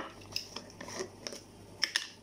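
Plastic screw lid being twisted off a glass jar: faint handling noise with a few light clicks, the sharpest near the end.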